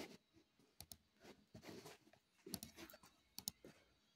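Faint, scattered clicks of a computer mouse, a few of them in quick pairs, against near silence.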